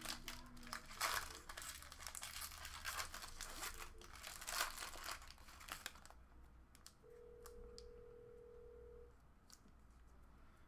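Foil trading-card pack wrapper crinkling and tearing open, followed by quieter light clicks as the stack of cards is handled. About seven seconds in, a steady two-pitch electronic tone sounds for about two seconds.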